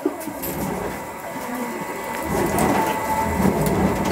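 Automatic rotating griddle machine baking matsugae mochi in hinged cast-iron molds: a steady hiss of dough cooking in the hot molds over a low mechanical rumble, with a faint steady whine coming in about halfway.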